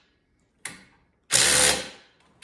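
DeWalt cordless impact wrench with a socket, run in one short burst of about half a second to tighten a bolt; a small click comes just before it.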